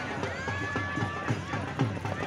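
Dhol drum beating a steady rhythm of about four strokes a second over crowd noise, with a long held high call in the middle.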